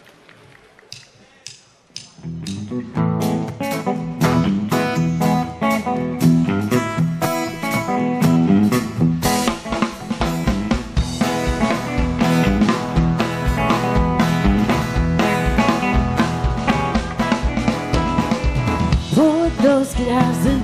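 Live country-rock band starting a song: a few sharp clicks, then drum kit, electric and acoustic guitars and bass come in together about two seconds in with an instrumental intro. The drum beat grows heavier about halfway through, and singing comes in near the end.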